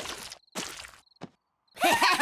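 Two short cartoon munching sound effects as a character eats from a box, then a single click, then two cartoon characters start laughing together near the end.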